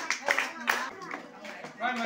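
Scattered handclapping from an audience, trailing off within the first second, with voices over it and a man starting to speak near the end.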